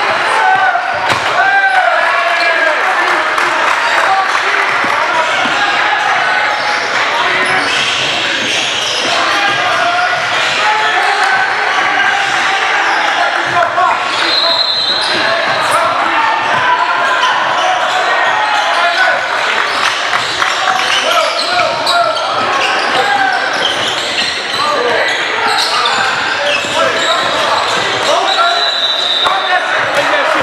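Live court sound of an indoor basketball game: a basketball bouncing on the hardwood floor amid the voices of players and spectators, echoing in a large gym. Two brief high-pitched squeaks or tones come about halfway through and near the end.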